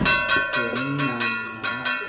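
Ritual metal percussion struck in a steady rhythm of about four strokes a second, each stroke ringing with a bright bell-like tone. Low voices chant underneath.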